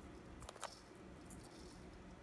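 Near silence: room tone, with two faint short clicks about half a second in.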